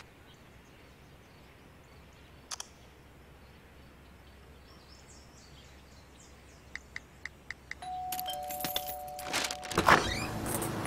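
A few soft taps of typing on a phone, then a two-note doorbell chime, the second note lower, about eight seconds in. A brief louder clatter comes right at the end.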